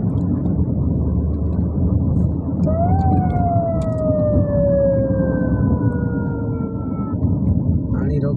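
Steady rumble of a vehicle driving along a road. About three seconds in, a siren-like tone rises briefly and then falls slowly in pitch for about four seconds before stopping.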